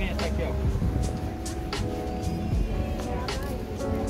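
Indistinct voices of people nearby and a few sharp knocks over a low steady rumble.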